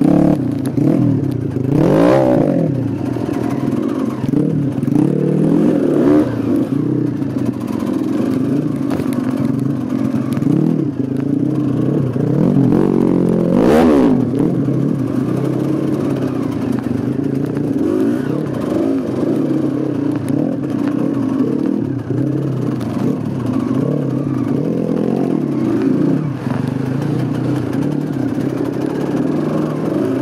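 Off-road dirt bike engine running at low speed while the bike is ridden slowly, its revs rising and falling with the throttle, with sharper rev rises about two seconds in and again around fourteen seconds.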